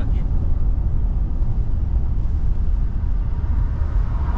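Steady low rumble of a car's engine and tyres heard from inside the cabin while driving.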